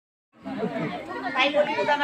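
Several people talking at once, overlapping voices starting about a third of a second in.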